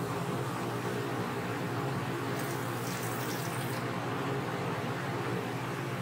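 Beer flushing in a steady stream from a Zahm & Nagel CO2 tester's stainless sample tube into a plastic bucket, briefly hissier from about two and a half to nearly four seconds in. The flush clears leftover gas bubbles from the tester's sight window before the CO2 reading.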